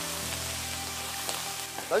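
Fatty slices of par-boiled pork sizzling steadily in hot lard in a wok as their fat renders out, stirred with a metal wok spatula.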